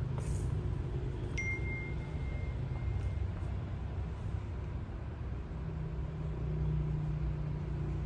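Steady low rumble, with a short high beep starting about a second and a half in.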